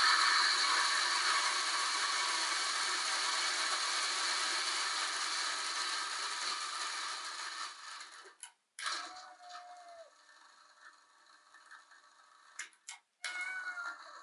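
A loud, steady rushing noise fills the first several seconds and fades out by about eight seconds in. Then a kitten meows: one short call about nine seconds in and another near the end.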